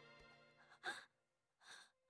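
Music fading out, then a young woman's crying breaths: a short gasp with a rising pitch about a second in, followed by a softer breath.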